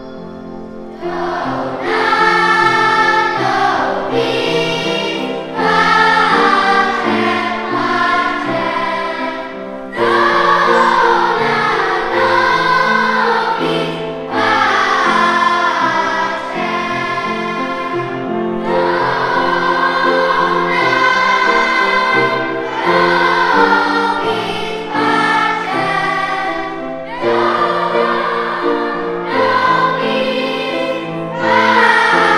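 Children's choir singing in phrases of a few seconds with short breaks between them, over steady accompanying notes.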